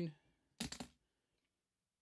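A brief clatter of metal coins clicking together, a few quick clicks about half a second in, as a magnet lifts a nickel-plated steel one-peso coin out of a pile of coins.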